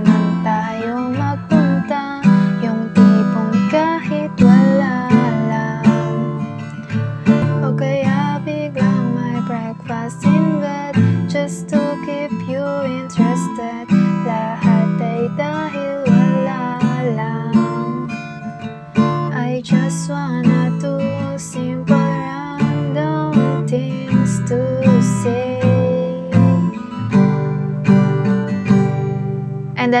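Acoustic guitar strummed in a steady rhythm, working through a chorus chord progression of F, Em, Dm and C.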